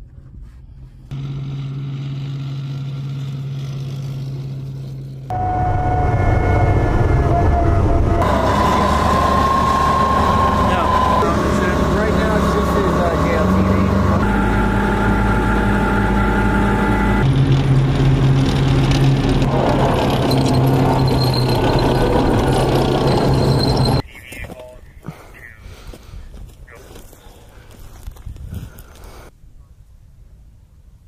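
Bradley Fighting Vehicle running loud, a steady engine drone with a higher whine, cut together from several shots so the sound changes abruptly every few seconds; it drops to quieter outdoor sound near the end.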